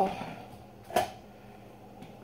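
A single short, sharp knock about a second in, over quiet room tone, just after a spoken word trails off.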